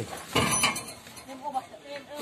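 Used tyres being handled and stacked, with one short loud rubbery knock-and-scrape about half a second in, followed by people talking.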